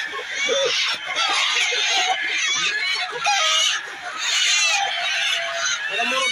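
A crowded flock of chickens, hens and roosters together, calling over one another without a break, with louder swells about half a second, two and a half seconds and four and a half seconds in.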